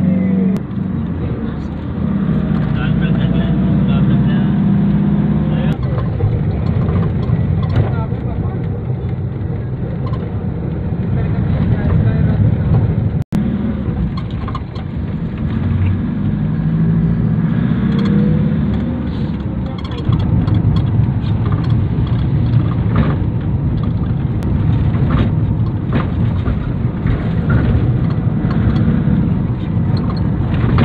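Engine and road noise of a moving vehicle heard from inside, a steady loud rumble that swells and eases, with a momentary dropout about halfway through.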